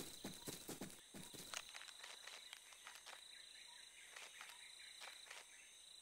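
Faint cartoon footstep sounds during the first couple of seconds, then near silence with a thin, steady high tone of the ambience.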